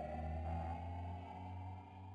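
Electronic intro sound effect: a held synthetic tone gliding slowly upward over a low hum, fading out.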